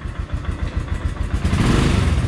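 Royal Enfield Himalayan's single-cylinder engine running just after a cold start, having sat unused for about 20 days. The revs pick up and it grows louder about a second and a half in.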